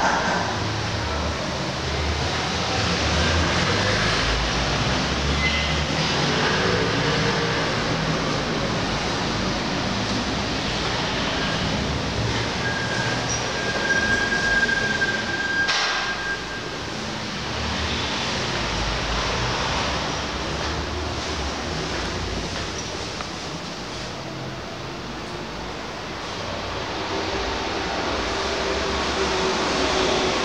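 Steady rumbling street-traffic noise heard from inside an empty apartment. Near the middle, a thin high tone holds for about three seconds and ends with a sharp click.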